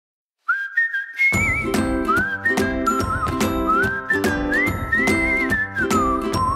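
Near silence for about half a second, then a show theme tune starts with a whistled melody. About a second in, a backing band with a steady beat joins it.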